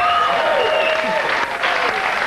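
Studio audience applauding, with a few voices calling out over the clapping in the first second or so.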